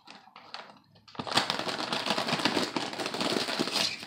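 Crinkly chip bag being handled and opened: a few short crinkles at first, then dense, steady crackling and rustling from about a second in.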